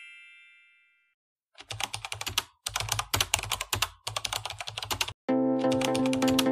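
Computer-keyboard typing sound effect: rapid key clicks in three quick runs with short pauses between. A chime fades out at the very start, and music with steady held notes comes in about five seconds in.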